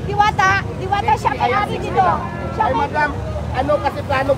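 Several people talking and calling out at once, with voices overlapping, over a steady low rumble.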